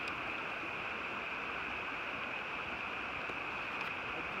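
Steady rushing of a shallow river's current over riffles, an even hiss with no distinct events.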